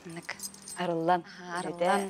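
Speech only: a person talking, in two short phrases after a brief pause at the start.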